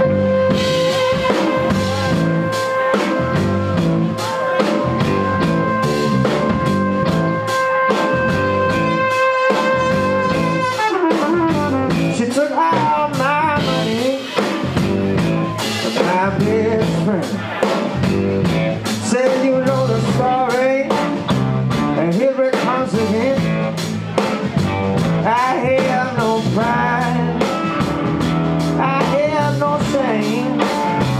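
Live blues-rock band playing: electric guitars, bass guitar and drum kit. A long held high note runs for about the first ten seconds, then gives way to a lead line of bent, wavering notes over a steady beat.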